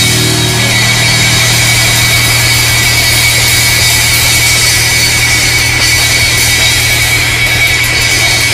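Loud, steady wall of distorted noise from a live rock band, with a high whistling tone held throughout and a low hum underneath.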